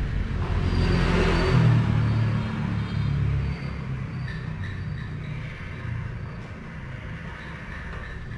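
A passing road vehicle: a low rumble that dies away about three and a half seconds in, leaving a quieter steady background hum.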